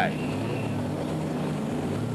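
Saloon racing car engines idling on the starting grid: a steady low drone with no rises or revs.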